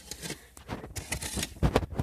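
A run of irregular scrapes, rustles and small knocks, with a dull thump about three-quarters of the way through.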